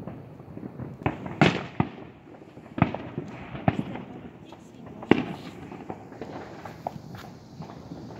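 Fireworks going off: a string of sharp bangs and pops at uneven intervals, each with a short echo, the loudest about a second and a half in and again around five seconds.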